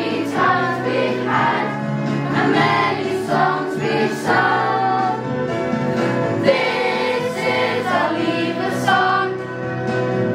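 A class of children singing a song together as a group.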